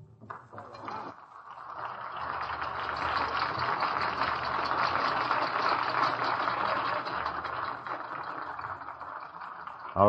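A large audience applauding at the end of a violin solo with orchestra. The applause swells about a second in, holds steady and thins toward the end. It is heard through an old radio broadcast recording.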